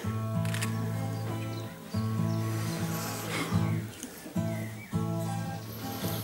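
Steel-string acoustic guitar playing an introduction: sustained ringing chords, changing every second or two.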